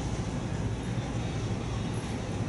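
Steady low rumble of room background noise, even and unchanging, with no bells or other distinct events.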